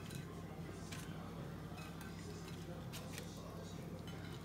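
Faint light clicks and clinks of hands arranging food on a ceramic plate, a few sparse taps about a second apart, over a steady low hum.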